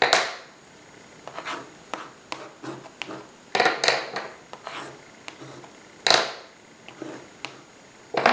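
Neocolor wax crayon scraping across watercolor paper in about six short strokes, with a few light clicks in between.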